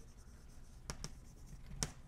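Chalk writing on a blackboard: faint scratching strokes with two sharp chalk taps, about a second in and again near the end.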